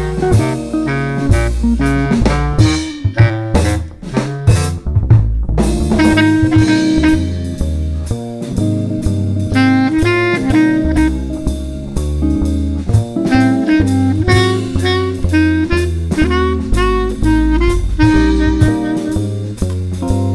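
Small jazz combo of bass clarinet, hollow-body guitar, double bass and drum kit playing a swinging tune, the double bass walking underneath. A short burst of drum hits comes about three to five seconds in.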